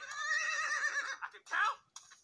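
A horse whinny from an animated film's soundtrack: one long wavering cry of about a second, then a short second cry, played through a screen's speaker.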